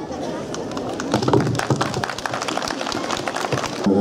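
A crowd applauding, many hands clapping at once at a steady level.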